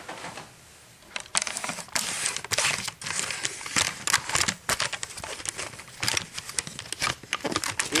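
Handling noise from a hand-held camera being picked up and carried across a small room: a quiet first second, then a long run of irregular rustles, crinkles and clicks.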